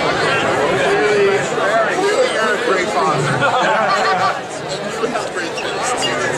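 Crowd chatter: many people talking at once, with overlapping voices and no single clear speaker.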